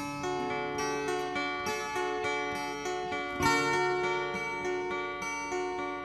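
Two acoustic guitars playing an instrumental passage of picked single notes that ring over one another, with no singing.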